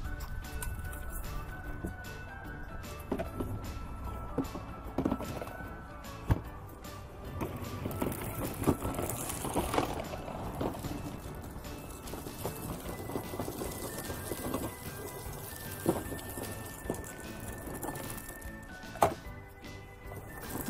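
Background music, under which a Kärcher KM 70/20 C manual push sweeper rolls over concrete, its roller and side brushes sweeping, with irregular knocks and clicks.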